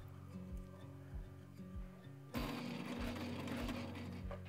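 Sailrite Ultrafeed walking-foot sewing machine starting up about halfway through and running steadily, sewing a short line of stitches through fabric, over background music with a steady beat.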